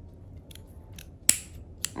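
Small scissors snipping through a folded piece of ribbon: a few faint clicks, then one sharp snip a little over a second in and a smaller one near the end.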